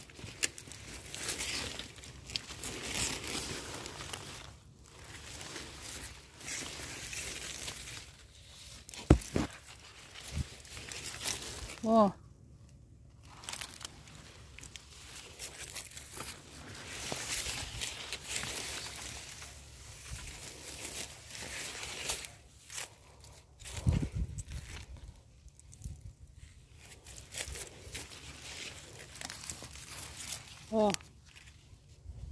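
Dry leaf litter and maize leaves rustling and crackling, with footsteps on the leafy ground as someone moves through a corn field. The sound is irregular throughout, with a few sharp snaps or knocks, the loudest just after nine seconds.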